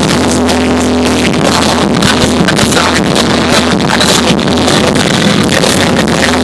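Loud hip-hop backing beat played over an arena sound system and heard from the crowd, with a deep bass held steady throughout.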